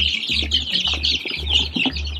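A brood of young chicks peeping rapidly and continuously, many voices at once, over background music with a steady low beat about twice a second.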